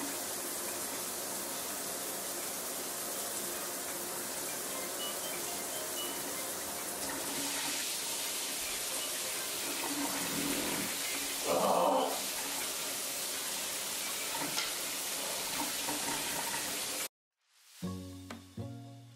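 Steady rush of running water, as from a bathroom tap, with a brief louder sound about two-thirds of the way in. It cuts off suddenly near the end, and music begins.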